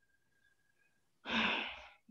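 A single audible sigh-like breath close to the microphone, about half a second long and starting just over a second in, then fading away.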